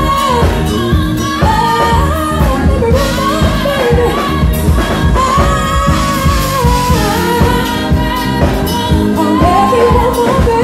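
A singer performing into a microphone through the room's sound system, long held notes with vibrato, over loud accompaniment with a steady beat.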